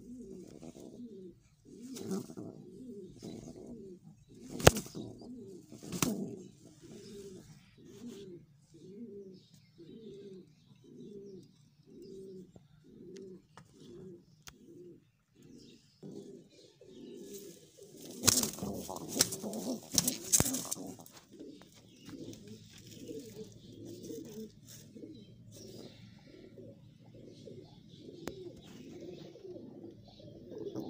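Domestic pigeon cooing in a steady series of short low coos, about one and a half a second. A few sharp taps come in the first few seconds, and a loud rustling flurry breaks in about two-thirds of the way through.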